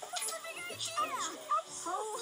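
Cartoon soundtrack played from a computer's speakers: wordless character vocal sounds with background music.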